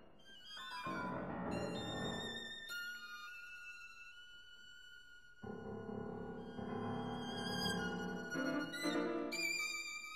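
A violin, viola and piano trio playing contemporary chamber music: high held string notes, with low, dense sound entering about a second in and again about halfway through.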